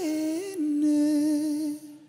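A man's voice holding one long sung note, steady in pitch after a short step near the start, then cutting off shortly before the end.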